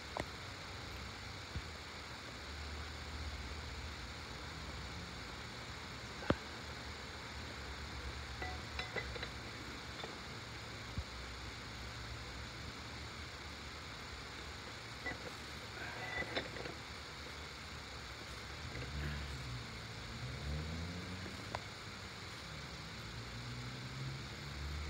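Scattered small metallic clicks and clinks of a jackhammer chisel bit being handled, the loudest a single sharp click about six seconds in, over a steady low hum. The jackhammer itself is not running.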